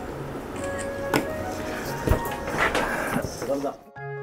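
Light background music with a steady bass line, under a few sharp knocks and clatter, the loudest about two seconds in. The music cuts off suddenly just before the end.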